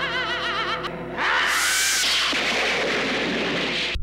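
Horror-show title sting: a high, wavering warbling tone over a low held drone, cut off about a second in by a sudden loud crash of noise like a thunderclap that dies away slowly over the next few seconds.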